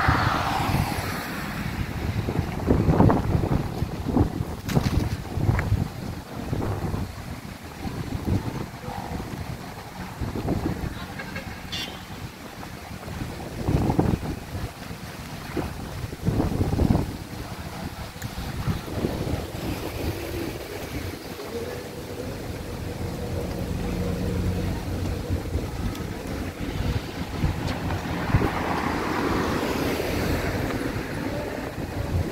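Wind gusting on the microphone in uneven low rumbles, with cars passing on the road.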